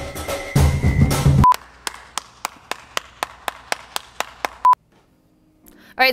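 Background music with drums stops on a short electronic beep, then a timer ticks about four times a second for about three seconds and ends on a second beep: a countdown-clock sound effect.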